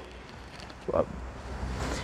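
Low rumble of handling and air noise on the microphone as the camera is carried quickly through the workshop, with a brief voice sound about a second in.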